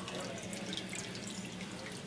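Aquarium water trickling steadily, with small drips and splashes over a faint low hum.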